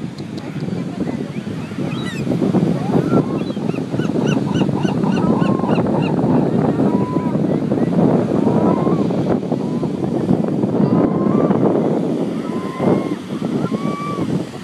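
Steady surf and wind noise on the beach, with a quick run of repeated gull calls about four seconds in and a few short, falling calls scattered later.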